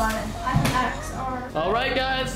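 Hollow wooden knocks of a wooden cube being set down on a wooden tabletop, one right at the start and another about half a second in, with voices behind.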